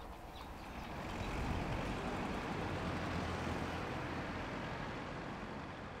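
Road traffic passing on a city street: a steady noise of engines and tyres that swells about a second in and slowly fades, as a vehicle goes by.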